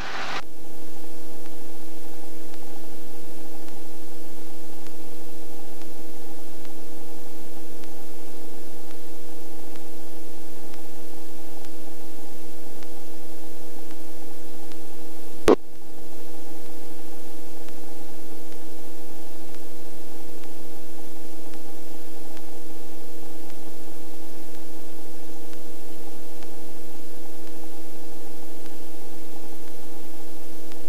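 Steady helicopter cabin noise from a Robinson helicopter flying low over an orchard: a constant hum of a few steady tones over a hiss, heard inside the cockpit. A single sharp click about halfway through.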